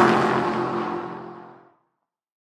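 Logo-sting sound effect: a whoosh with a pitched hum under it, already at its loudest and fading away, gone about one and a half seconds in.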